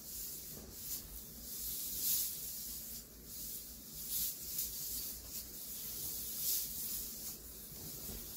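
A plastic hula hoop swishing against the body and clothes as it spins around the waist: soft, hissy swishes roughly once a second.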